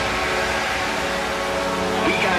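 Drum and bass set in a breakdown: the drums have dropped out, leaving held synth chords over a steady wash of noise.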